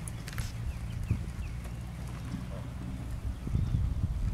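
A horse's hooves moving in a sand arena, with a steady low rumble underneath. Soft hoof thuds grow stronger near the end.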